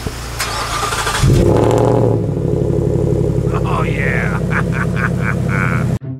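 Ford F-150's V8 cold start: the starter cranks for under a second, then the engine catches with a loud flare of revs about a second in and settles into a steady, fast cold idle.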